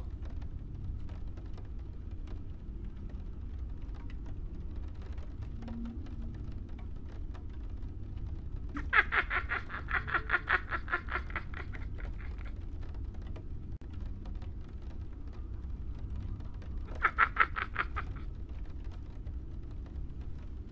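Vape crackling during two inhales: a dense run of rapid clicks lasting about three seconds, then a shorter one near the end, over a faint steady low hum.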